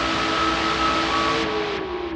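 ARP 2600 clone synthesizer sounding a loud white-noise hiss over a few held drone tones. About a second and a half in, one tone slides slightly down and the hiss starts to grow duller in steps.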